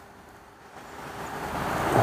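Outdoor background noise: an even rushing sound with no distinct tone that swells steadily louder through the second half.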